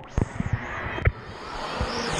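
Wave-pool water rushing and splashing right at a waterproof camera held at the surface, with a few sharp knocks of water against it.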